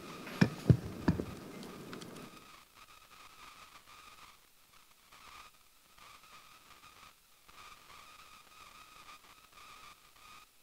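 A few sharp clicks in the first second or so, then faint room tone with a steady, thin high-pitched whine.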